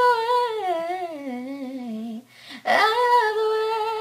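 A boy's voice singing alone, without words or accompaniment. One long wavering note slides slowly downward, breaks off just after two seconds, and is followed by a second long note held steady at a higher pitch.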